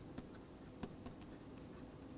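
Faint taps and scratches of a stylus writing on a tablet, with a few short, sharp clicks as the pen tip strikes the surface.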